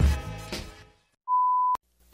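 The tail of a hip-hop backing track fading out, then a single steady electronic beep about half a second long that cuts off with a click.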